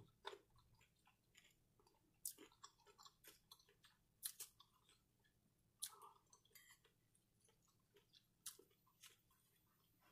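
Faint close-up chewing and wet mouth sounds of a person eating spoonfuls of chicken tortilla soup, with scattered sharp clicks a few times through.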